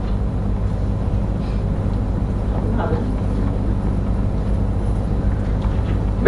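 A steady low hum with no change in pitch, broken twice by brief faint voice sounds.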